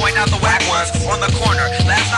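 Hip hop beat with a steady bass line and held tones, with a rapping voice over it.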